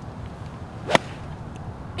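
A golf wedge striking the ball on a full swing from the fairway: one sharp, crisp click just before a second in, over faint outdoor background noise.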